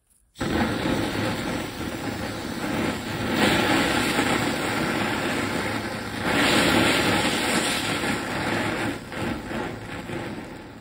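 Nitrous oxide gas rushing out of a hose onto a burning paraffin fire lighter: a loud, steady hiss and flame noise that starts abruptly about half a second in and swells louder twice. The fire flares white-hot as the nitrous oxide feeds it oxygen. The noise eases off near the end.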